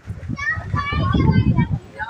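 Voices talking in the background, including high children's voices, with no other clear sound.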